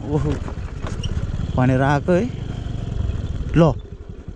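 Motor scooter riding slowly over a rough dirt road, its engine and the ride giving a steady low rumble, with a voice speaking briefly near the start and again around the middle.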